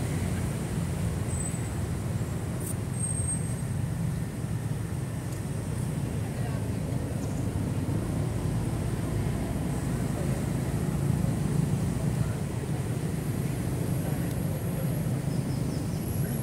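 Steady low outdoor rumble with a faint hiss, unchanging throughout, with no distinct event standing out.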